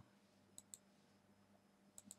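Computer mouse button clicking faintly: two clicks in quick succession about half a second in and another right at the end, over near-silent room tone.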